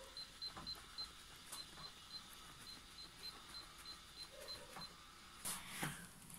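Home exercise bike being pedalled: faint soft clicks and knocks, with a run of quick, faint high beeps, about four a second, that stop near the five-second mark.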